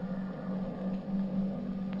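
Steady low drone of a light aircraft engine, a sound effect for a cartoon plane in flight, wavering a little in pitch over old soundtrack hiss.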